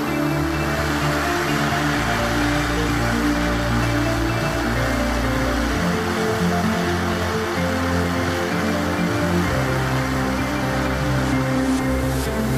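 Background electronic music with sustained low bass notes that change every few seconds, over a steady hiss.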